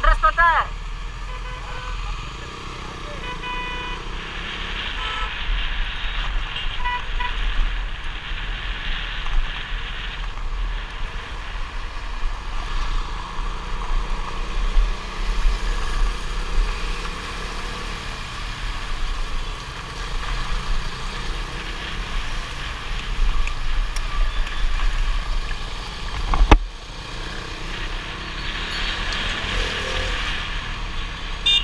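Motorcycle riding through traffic: steady engine and road noise with wind on the microphone. Vehicle horns sound in the first few seconds, a warbling one right at the start and then short beeps, and a single sharp knock comes about 26 seconds in.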